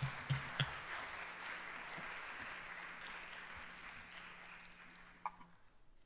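Audience applauding, dying away about five and a half seconds in.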